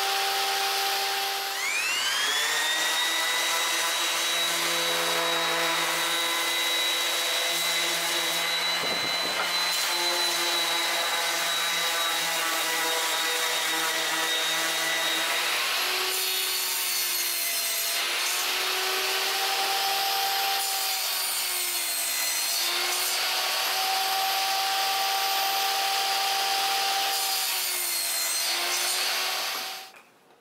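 Table saw running with a steady whine; about two seconds in its pitch rises as the motor comes up to speed. From about halfway on, the whine dips and recovers several times as wood is fed through the blade.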